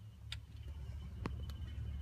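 A few short, light clicks over a steady low rumble.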